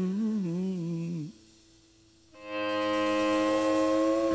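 A man humming a wavering, wordless note that stops about a second in. Then comes a second of near silence, and from about two and a half seconds a sustained chord from the band's instruments swells in and holds steady.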